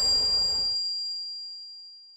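Logo sting sound effect: a loud rushing sweep that cuts off under a second in, over a high bell-like ding that rings on and slowly fades away.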